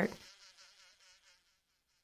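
Faint, wavering buzz of a wasp sound effect. It fades away and stops about a second and a half in, leaving silence.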